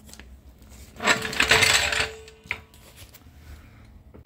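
A burst of metallic jingling and rattling about a second in, lasting about a second, with a single ringing tone that fades out shortly after it and one sharp click.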